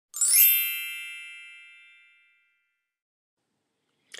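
A single bright bell-like chime with a quick upward shimmer as it is struck, ringing on and fading away over about two seconds.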